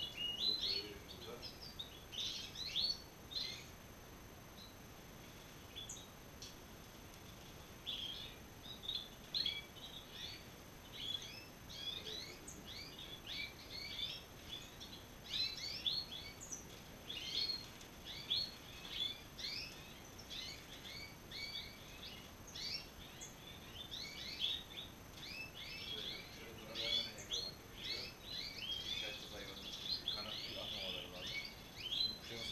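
Many caged European goldfinches twittering and chirping in quick short calls. There is a lull of a few seconds near the start.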